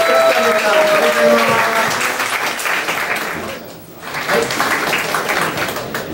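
An audience applauding, with a man's voice heard over the clapping. The clapping drops away briefly about four seconds in, then picks up again.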